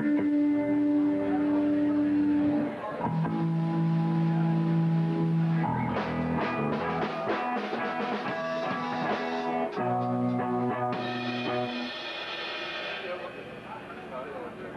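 Electric guitars of a post-hardcore band holding long ringing chords that change every few seconds, with a run of drum and cymbal hits in the middle, the sound dying away near the end.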